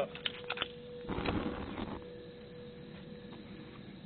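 A lighter clicking a few times, then a short rush of propane catching alight along a Rubens tube about a second in.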